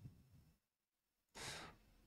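Near silence, with one short breath about one and a half seconds in.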